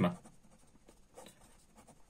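Faint strokes of a marker pen writing on paper.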